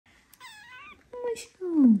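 A very young kitten mewing: a thin, high, wavering mew, then a shorter one about a second in. Near the end a person gives a low, falling "mm-hmm", the loudest sound.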